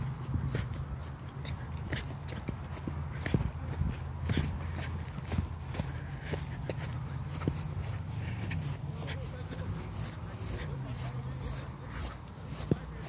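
Footsteps of people walking on grass and dry dirt: irregular soft thuds and clicks, about two a second, over a steady low rumble.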